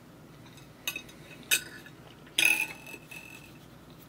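Metal fork clinking against a ceramic plate three times, the third strike leaving a short ringing tone.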